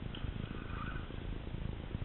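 Spinning reel being cranked, a steady rough whirr from its gears as a hooked fish is reeled in under load.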